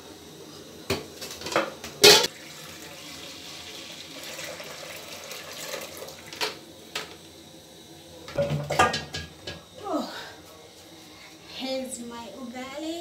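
A metal spoon knocks and scrapes against an aluminium cooking pot, with the loudest clank about two seconds in. Then liquid is poured through a plastic strainer into the pot, making a soft steady splashing.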